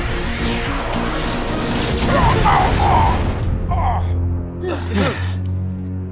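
Animated-cartoon soundtrack: dramatic background music under a loud rushing, blast-like sound effect that cuts off sharply about three and a half seconds in. Brief character voice sounds follow over a held low note of the music.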